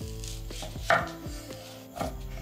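Chef's knife slicing through a red onion and knocking on a wooden cutting board: a few chops, the loudest a sharp knock about a second in.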